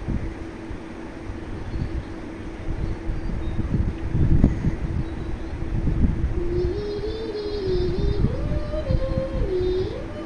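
Low rumbling cooking noise with a steady hum from a gas stove, as tomato masala thinned with water bubbles in an aluminium wok. From about six and a half seconds a faint wavering tune plays over it.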